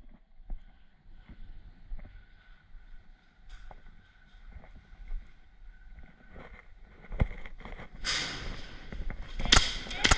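Soft footsteps and gear rustle from a player moving through a room with a concrete floor. Near the end comes one sharp crack: a shot from an AAP01 gas-blowback airsoft pistol.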